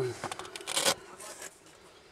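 Brief rustling and scraping of fabric brushing close to the microphone, a few short scuffs in the first second, the last and loudest just before the one-second mark, then quiet.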